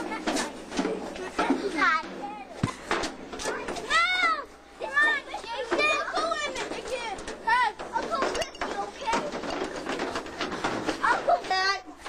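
Several children's voices shouting, calling and squealing over one another at play, with many high calls that rise and fall in pitch.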